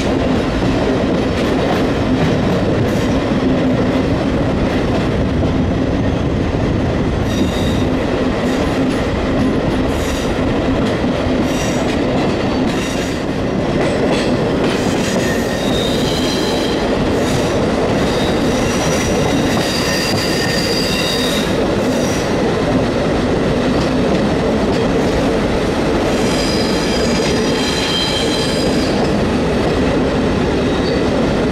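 A train running on rails, heard from an open window of the moving train: a steady low hum with wheel-on-rail clatter. About halfway through, on a curve of the track, the wheels start squealing high-pitched, on and off until near the end.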